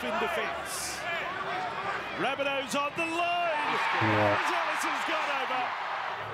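Television match commentary over a stadium crowd from a rugby league broadcast. The crowd noise swells for a second or two past the middle.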